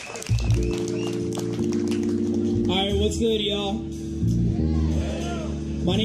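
Live band playing a steady vamp on sustained chords, electric bass and keyboard holding low notes, which comes in just after the start. A voice calls over it about three seconds in.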